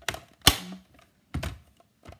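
Hard plastic cutting plates of a manual die-cutting machine clacking and knocking against the machine and desk as they are set into its opening: a few sharp separate knocks, the loudest about half a second in.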